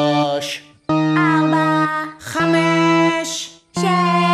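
Music: sung notes from the singing organ pipes, three held notes one after another, each lasting about a second with a short break between them.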